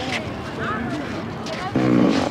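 A loud, low, buzzy fart noise near the end, lasting about half a second, over people talking.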